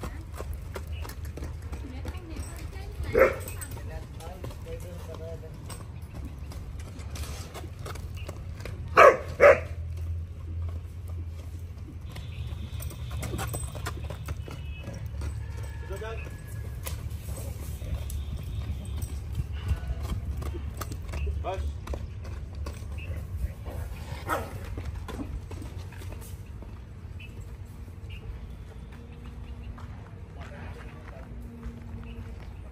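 Dogs barking, once about three seconds in and twice in quick succession about nine seconds in, over the patter of a horse's hooves on bare dirt as it trots in circles on a lunge line.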